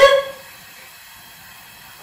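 A voice trailing off in the first moment, then only a faint steady hiss.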